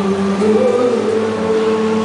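A slow live worship song: men singing long, held notes into microphones, with an acoustic guitar accompanying.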